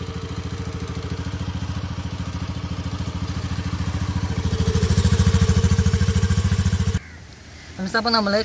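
Honda scooter's single-cylinder four-stroke engine running at the exhaust silencer in a steady fast beat, picking up speed and loudness about four seconds in. The sound cuts off suddenly about seven seconds in.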